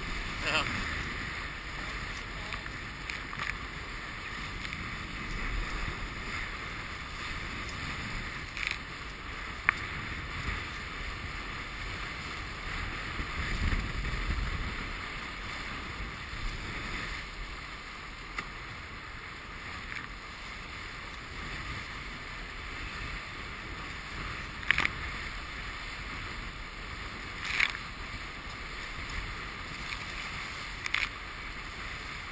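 Water rushing steadily along the hulls of a Hobie catamaran under sail, with gusts of wind buffeting the microphone. Now and then there is a short sharp slap.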